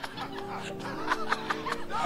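A man laughing into a microphone in short bursts, over a held chord of music that comes in about a quarter second in.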